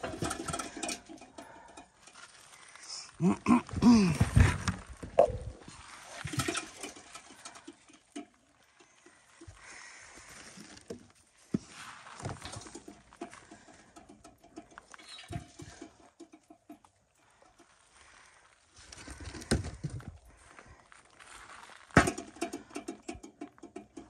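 Sweet potatoes being piled into the metal pan of a hanging scale, knocking and rustling against the metal in several short spells, with one sharp knock near the end.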